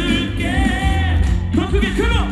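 Live pop ballad: a male singer singing into a handheld microphone over a band backing, amplified through a concert PA, his held notes wavering with vibrato.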